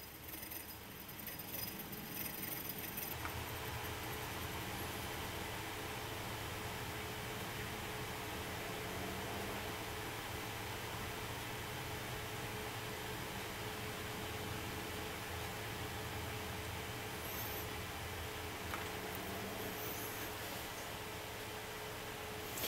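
Homemade single-coil DC motor running: the enamelled copper wire coil spinning, its bare axle ends rattling and scraping steadily in the bent-wire supports as they make and break contact.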